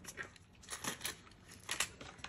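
A coin dropped into a clear plastic zip pouch, clinking against the coins already in it, with light rustling of the plastic; a few small clicks.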